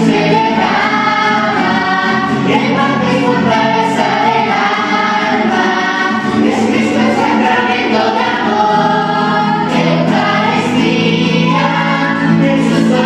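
Children's church choir singing a Spanish-language communion hymn in unison, with acoustic guitar accompaniment.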